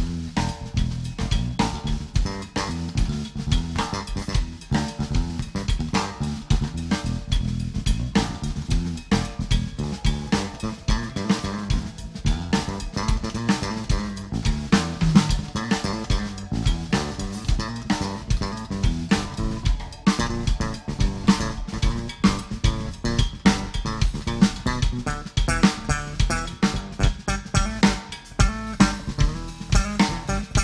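Live blues band playing an instrumental passage led by electric bass guitar over a steady drum kit beat, with no singing.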